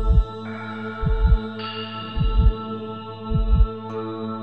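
Heartbeat sound in a darkwave track: a low double thump, lub-dub, four times at a slow, even pace, over a sustained synth drone that thickens twice as higher layers come in.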